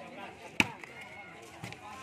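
A volleyball struck hard by a player's hand on the serve: one sharp smack about half a second in, then a fainter knock a second later. Spectators talk faintly in the background.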